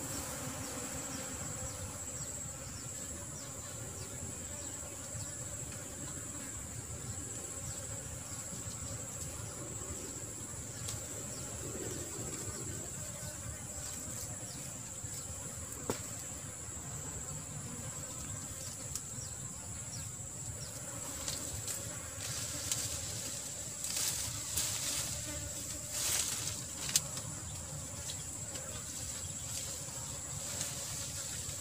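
A steady, high-pitched drone of insects in the undergrowth, holding one even tone throughout. A few short rustles come near the end.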